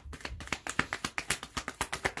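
A rapid, irregular run of light clicks and taps, several a second.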